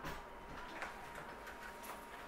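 A front door's lock and latch clicking a few times as the door is unlocked and swung open, faint, over a faint steady tone.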